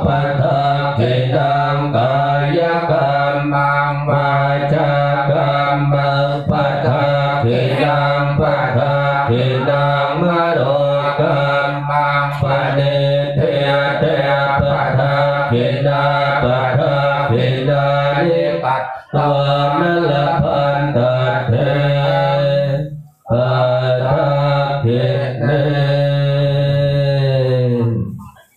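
Thai Buddhist chanting, recited in a steady monotone with a held low drone, broken only by brief breath pauses about 19 and 23 seconds in.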